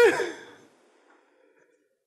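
A man's high-pitched laughing gasp that falls in pitch and dies away about half a second in.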